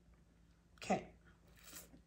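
Quiet room tone broken by one short spoken word, "okay", about a second in, with faint rustling afterwards.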